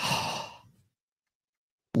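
A man's loud, breathy exhale, a sigh of awe that fades out in under a second, followed by dead silence.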